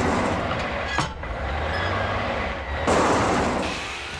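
Cartoon sound effects: a steady rushing whoosh over a low rumble, with a sharp click about a second in and a louder surge of rushing near the three-second mark.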